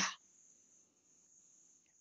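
A pause in speech that is near silent, apart from a faint, steady, high-pitched hiss in the background. A man's voice trails off right at the start.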